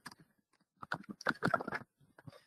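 A burst of rapid clicks and knocks lasting about a second, in the middle of a pause between speakers.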